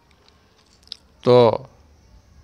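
A man's voice speaking one short word close to a headset microphone, with a short click a moment before it; otherwise quiet room tone.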